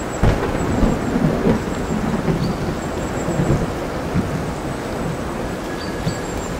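A thunder rumble breaks in suddenly at the start and rolls on in several surges for about four seconds over steady heavy rain and surf.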